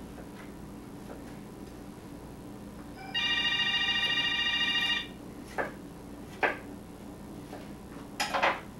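A landline telephone ringing once with a warbling electronic ring that lasts about two seconds, around the middle, followed by two short knocks.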